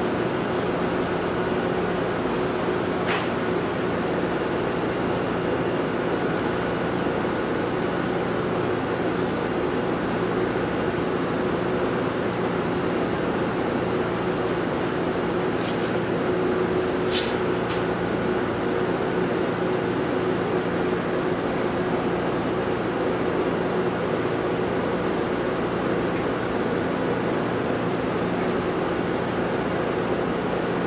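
Steady machine hum with a rushing noise and a thin high whine, unchanging throughout, with a couple of faint clicks, one about 3 seconds in and one around 17 seconds in.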